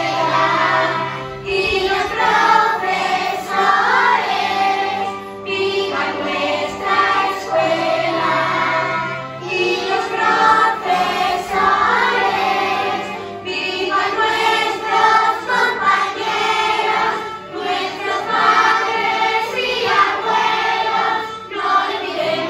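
A song with a group of voices singing together over instrumental backing, in phrases a few seconds long.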